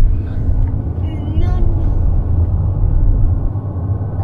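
Steady low road rumble of a car on the move, heard from inside the cabin, with a faint voice briefly about a second and a half in.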